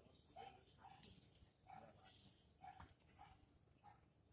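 Near silence, with a few faint short sounds and one sharp click about a second in, from a metal castration bander being handled as a band is loaded onto it.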